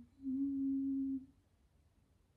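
A woman's voice holding a hummed "mmm" on one steady low note for about a second, a thinking pause in her talk.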